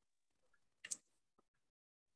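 Near silence, broken once about a second in by a short, sharp double click.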